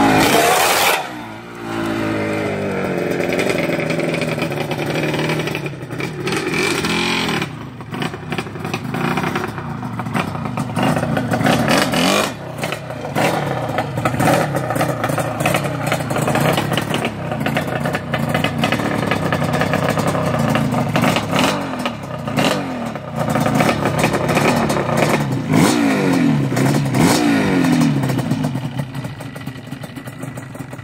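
Yamaha Banshee ATV's twin-cylinder two-stroke engine being ridden hard, revving up and falling back again and again, with a short drop about a second in. Near the end it settles to lower, quieter running.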